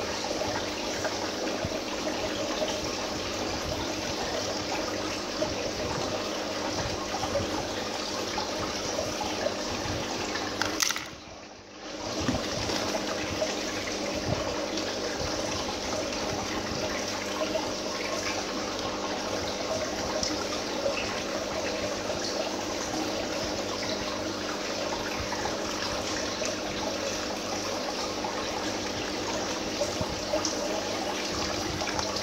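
Submersible aquarium pump running, water trickling and splashing steadily into the tank with a low steady hum. The sound drops away briefly about eleven seconds in, then returns.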